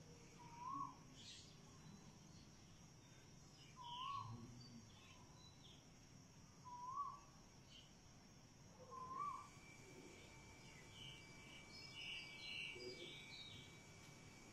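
A bird calling faintly, a short rising-and-falling call repeated about every three seconds, with a few higher chirps near the end.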